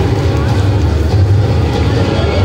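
Loud, steady low rumble with indistinct voices over it.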